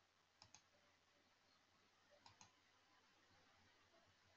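Two faint computer mouse clicks, each heard as a quick pair of ticks, about half a second in and again about two seconds later; otherwise near silence.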